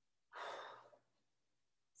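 A woman's single breathy exhale, a sigh from the effort of a lunge exercise. It lasts about half a second and fades out.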